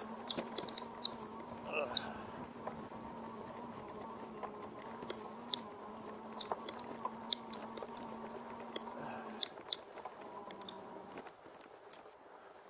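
Electric bike's rear hub motor whining steadily under assist while the tyres roll over freshly mowed grass, with scattered sharp clicks and rattles. The whine stops about two seconds before the end as the bike slows.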